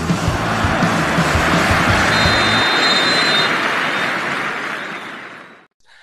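Rock music from a show's promo jingle, drums and bass, which stops about two and a half seconds in under a broad rushing noise effect that swells and then fades away to silence just before the end.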